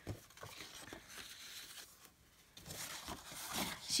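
Faint rustling and sliding of sheets of scrapbook paper being handled, with a short tap at the start and more rustling again in the second half.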